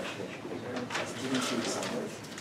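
Indistinct murmur of several people talking quietly among themselves in a lecture room, no single voice standing out.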